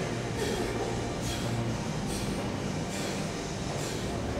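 Steady low rumble with a faint hum: gym room noise, with soft hiss-like pulses about once a second.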